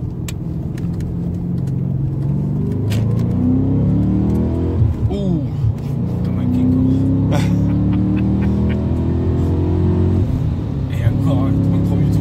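BMW M5 E39's naturally aspirated five-litre V8, breathing through a Supersprint X-pipe exhaust, heard from inside the cabin under hard acceleration. The engine note rises steadily, dips briefly at a gear change about five seconds in, then climbs again through the next gear and falls away near the end as the throttle is lifted.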